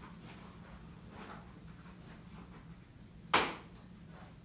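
A single sharp knock near the end, over a faint steady low hum of room tone.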